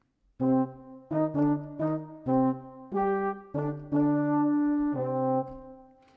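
Native Instruments Valves sampled brass ensemble (flugelhorn, French horn, trombone, euphonium and tuba) playing a slow phrase of held notes from its Cloud Arp preset. The notes change every half second to a second, and the last one fades away near the end.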